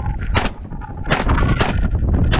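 Three 9mm shots from a DIY carbon-alloy Mac-style upper, fired one at a time. The first comes about half a second in, and the last two follow closer together, about half a second apart.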